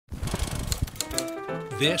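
Rapid, irregular typewriter key clacks as an intro sound effect, giving way after about a second to music with held notes. A man's voice starts speaking just before the end.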